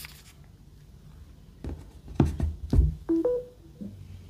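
A phone in a clear case is handled and set down with several knocks and thuds on a hard surface. Just after, a short rising two-note electronic chime plays from the phone, as when it is laid on a wireless charger.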